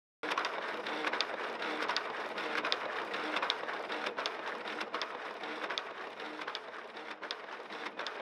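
Desktop printer running as it prints pages: a dense stream of rapid clicking and rattling, with a low motor hum that comes and goes in short pulses. It starts suddenly just after the beginning.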